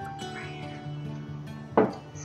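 Quiet background music with steady sustained notes, and a single short knock near the end as a ceramic mug is set down on the table.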